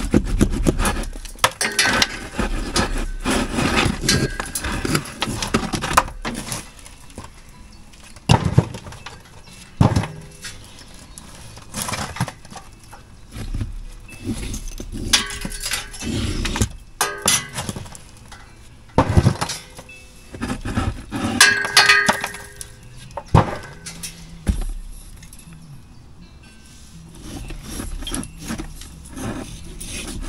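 Loose old bricks and mortar being pulled out of brickwork by hand: irregular clinks and knocks of brick on brick, with scraping and crumbling rubble between them.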